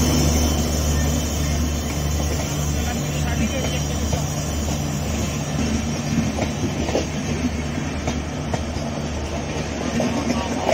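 Passenger coaches of a diesel-hauled express rolling past close by, a steady rumble with scattered wheel clicks over the rail joints, mostly in the second half. Under it runs a low diesel drone that eases slightly as the locomotive moves away.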